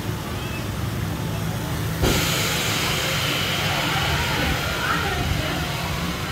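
Busy theme-park ambience with crowd chatter, joined about two seconds in by a sudden loud steady hiss.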